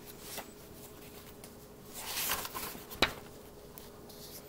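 Paper pages of a notebook being flipped and handled: a rustle of paper about two seconds in, then a single sharp click about three seconds in.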